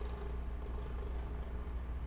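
A steady low hum on the recording, with a faint higher steady tone above it, unbroken and unchanging.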